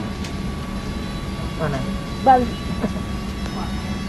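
Steady airliner cabin noise, a low even drone with a constant hum, under a few spoken words.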